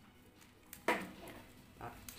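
Handling of a rubber-sheathed electrical extension cord and its plug: a single sharp click about a second in, then faint rustling of the cord as the knotted coil is undone.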